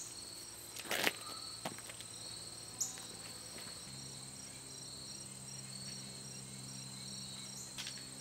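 Outdoor insects trilling steadily in high, thin tones, one of them pulsing evenly. A couple of short clicks in the first few seconds, and a low steady hum comes in about halfway.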